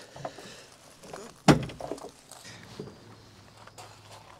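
Bonnet release lever under the dashboard of a Mk1 Ford Fiesta being pulled, with a single sharp clunk about a second and a half in as the catch lets go. Small knocks and rustles of handling come before it.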